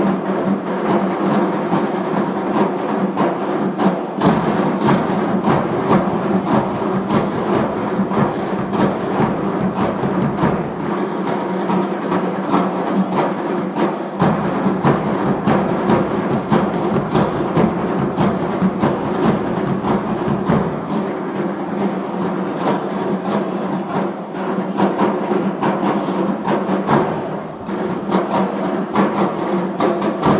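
An ensemble of Armenian dhols, double-headed hand drums, playing together in a fast, continuous rhythm, loud throughout.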